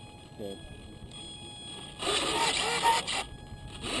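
Muffled, unclear speech close to the microphone, loudest a little past the middle, over faint steady high-pitched tones.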